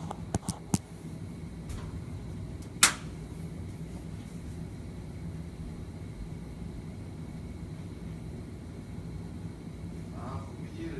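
A phone being handled and set in place on a kitchen counter: three light clicks in the first second, then a sharp knock about three seconds in. Under them runs a steady low kitchen hum.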